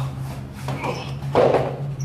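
A person being thrown lands on interlocking foam mats: one dull thud about a second and a half in, over a steady low hum.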